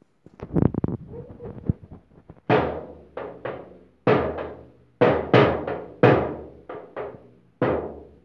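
A small toy drum beaten with a stick: a few soft thumps of handling first, then from about two and a half seconds in about a dozen uneven strikes, each ringing briefly on the vibrating drumhead.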